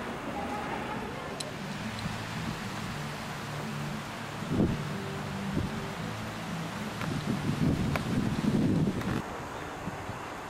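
Wind buffeting a handheld camcorder's microphone in gusts, loudest for the last few seconds, over a steady low hum of outdoor background noise.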